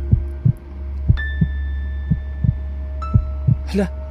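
Suspense soundtrack: a heartbeat sound effect, a double thud about once a second, over a loud low drone and sustained synth notes that change chord twice.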